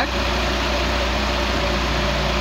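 Carbureted engine with a Weber 32/36 DGV-type (Holley 5200) carburetor idling steadily while its idle mixture screw is set for maximum manifold vacuum, about 21 inHg on the gauge.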